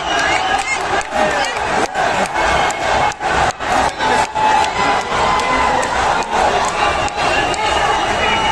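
Arena crowd cheering and shouting during an MMA bout, with frequent sharp claps or cracks cutting through the noise.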